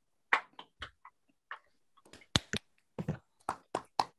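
Scattered hand claps from a few people, heard through a video call: a dozen or so short, irregular claps with near silence between them.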